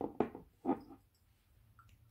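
Glass perfume bottles being handled, giving three short, light knocks within the first second.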